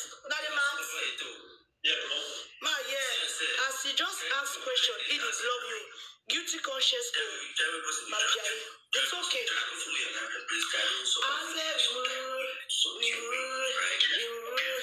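A woman talking in a live-stream's audio, with music under it. The sound is thin, with no bass.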